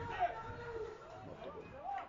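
Indistinct voices calling out, with no clear words, over the open-air ambience of a football pitch.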